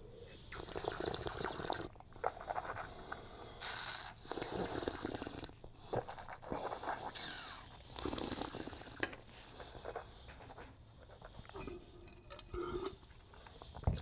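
Wine being slurped and swished in the mouth during a tasting, a series of short bursts with air drawn hissing through the wine, fading out after about ten seconds.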